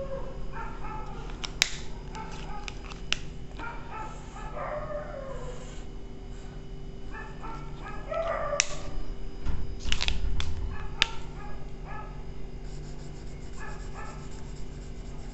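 Dry-erase marker squeaking in short, quickly changing squeaks and tapping against a whiteboard while chromosome outlines are drawn and shaded, with a few sharp clicks. A steady low electrical hum sits underneath.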